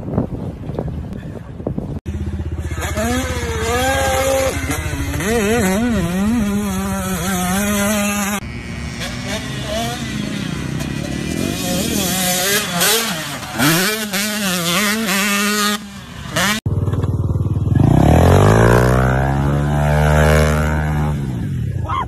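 Dirt bike engines revving, the pitch climbing and dropping over and over, in separate clips joined by abrupt cuts about two seconds in and again near the end. The last clip has deep, swooping rises and falls in engine pitch.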